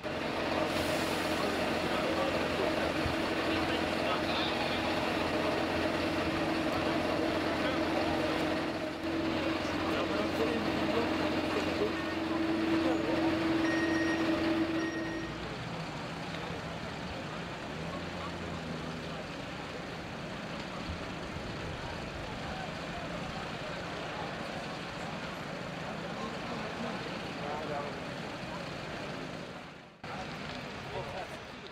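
A fire engine's diesel engine and pump running steadily at high revs, a loud constant hum over a broad rush. About halfway through the hum stops, leaving a quieter, even rushing noise.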